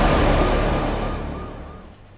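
Dramatic sound-effect sting for a news segment title: a loud rushing noise over a deep rumble, with a faint repeated high synth note, fading out by the end.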